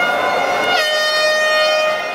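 Supporters' horns sounding in a stadium stand over crowd noise: several steady horn tones overlap, and one loud long horn note comes in about a second in and holds to the end.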